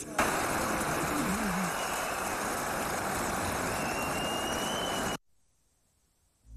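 Audience applauding steadily after a speech, cut off abruptly about five seconds in.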